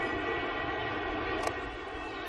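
A steady droning hum with several held tones, and a single sharp crack of bat on ball about one and a half seconds in.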